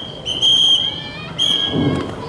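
Two short, steady blasts on a traffic whistle, each under a second long, keeping time for a squad's traffic-control hand signals, with a low thump near the end.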